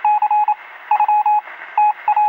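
A rapid run of electronic beeps at one pitch, some short and some longer, in an irregular rhythm like Morse code, over a steady hiss with a thin, telephone-like tone.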